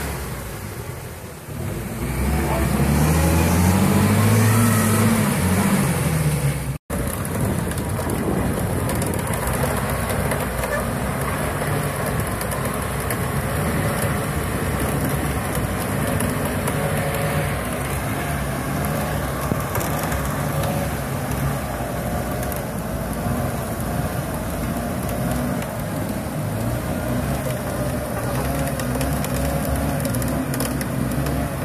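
UAZ-469 off-roader's engine revving up and falling back as its tyres spin in deep mud. After a brief dropout about seven seconds in, it keeps running hard under load, with the wheels churning and spraying mud.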